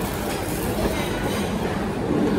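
A loaded cafeteria tray being slid along the counter's tray rail: a steady rolling rattle.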